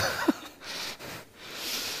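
A man laughing quietly: a short voiced sound, then three breathy chuckles.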